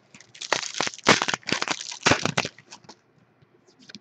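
Foil wrapper of a 2011 Playoff Contenders trading-card pack crinkling and tearing as it is ripped open: a dense flurry of crackles for about two seconds, then a few light rustles near the end.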